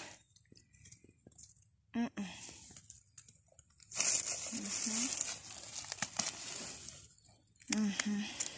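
Rustling and crinkling as mushrooms are cut and handled by hand over dry leaf litter, loudest for about two and a half seconds from the middle of the stretch.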